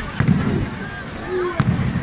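Two firecracker bangs, a sharp crack with a low rumble after each, one just after the start and one near the end, over crowd chatter.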